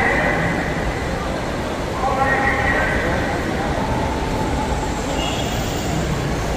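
High-pitched voices calling out, once at the start and again about two seconds in, over a steady low rumble of traffic and crowd noise.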